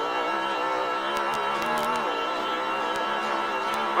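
Off-road race car's engine running hard under load as the car accelerates away on a dirt track, holding a fairly steady pitch, with a few light ticks over it.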